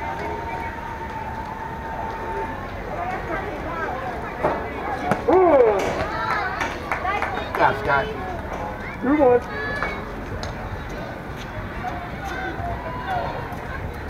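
Voices of softball players and spectators calling out and cheering across the field, with loud yells about five seconds in and again about nine seconds in. A long steady tone sounds in the first couple of seconds.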